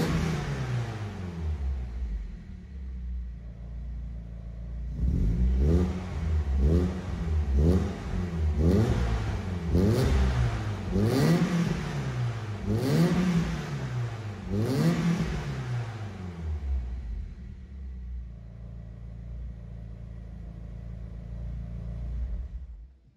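BMW E30 318iS four-cylinder heard through a self-built stainless steel exhaust: new pipework from the catalytic converter back, the original centre muffler and a universal rear silencer with a 70 mm tailpipe. The engine falls back from a rev to idle, is blipped about nine times a second or two apart, then settles to a steady idle for the last few seconds.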